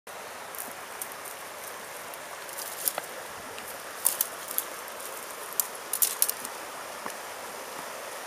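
Footsteps over loose shale and flat creek stones, with scattered sharp clicks of stone knocking on stone, over the steady rush of a shallow stream.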